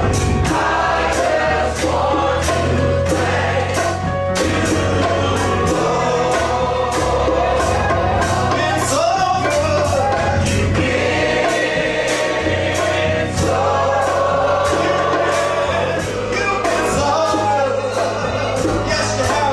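Gospel singing by a group of voices with instrumental backing: held bass notes changing every second or two under a steady beat.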